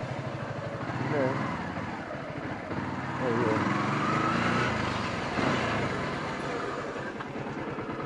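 Yamaha R15 single-cylinder motorcycle engine running at low speed, its pitch rising and then falling in the middle with the throttle.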